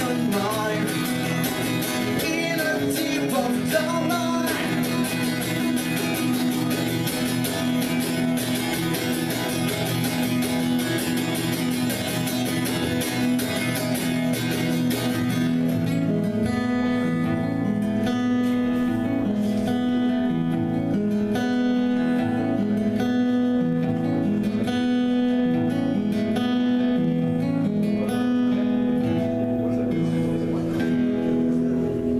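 Steel-string acoustic guitar played live with a man singing over it at first; about halfway through the dense strumming gives way to a lighter, repeating figure of ringing notes with no voice.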